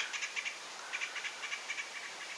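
Small birds chirping: a quiet, irregular run of short, high chirps.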